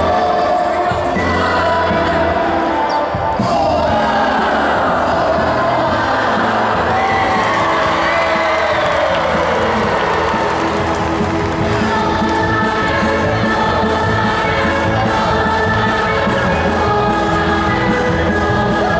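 Loud dance music with a heavy, steady thudding beat, played for dancers; partway through, an evenly repeating high ticking joins the beat.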